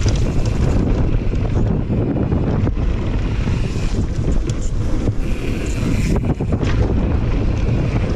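Wind buffeting a GoPro's microphone as a mountain bike rides fast down a dirt trail, under tyre noise on the dirt and scattered knocks and rattles from the bike going over bumps.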